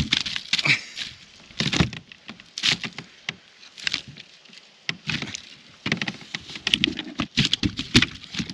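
A freshly landed carp flapping while it is handled, heard as a run of irregular slaps, knocks and rustles.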